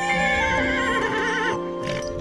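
A horse whinnies, one long wavering call that stops about one and a half seconds in, over background music of held notes.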